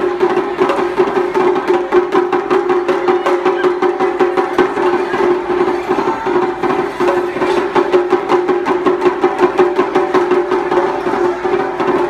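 Taiko ensemble drumming: rapid, steady strokes of sticks on a small tightly-tuned shime-daiko, with large barrel drums struck behind it. A steady tone runs underneath the strokes.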